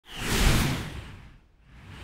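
Whoosh sound effect for a logo reveal: a noisy swish that swells and fades out about one and a half seconds in, then a second one building near the end.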